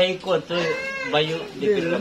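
Voices of people talking and calling out, with drawn-out pitch glides.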